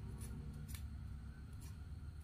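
Knife tip cutting into a watermelon wedge along the seed row, giving a few faint, light crisp clicks over a low steady background hum.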